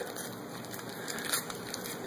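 Faint crinkling and light clicking of a plastic-wrapped package of bacon as it is rolled up by hand.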